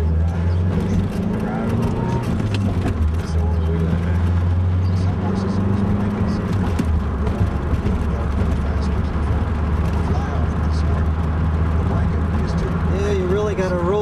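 Pontiac Fiero on the move, heard from inside the cabin: a steady low drone of engine and road noise.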